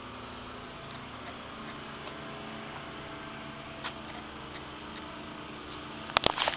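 Faint steady background hum with a few light ticks and one small click about four seconds in.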